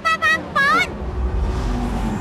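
Low, steady engine hum of a flying vehicle, a cartoon sound effect. A high-pitched character voice speaks over it for the first second or so.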